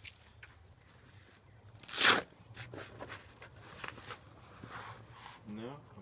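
A bag being rummaged through by hand: soft rustling with one short, loud crinkle about two seconds in.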